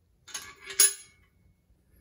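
Small steel hardware and a wrench clinking together as they are handled: a few sharp metallic clinks within the first second, the loudest near its end.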